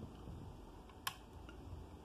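A single sharp click about a second in, over faint low room noise: handling noise from the phone as it is handled and tapped to focus.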